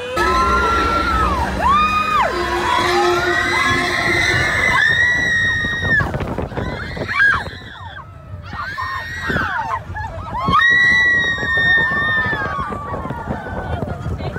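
Riders screaming and whooping on the Slinky Dog Dash roller coaster as the train launches and runs, over a low rumble of the train and wind. The screams come as several long, high cries, the longest in the middle and again late on.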